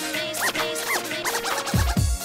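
DJ scratching a sample over a dance track in short rising-and-falling strokes while the kick drum is dropped out. The kick drum comes back in just before the end.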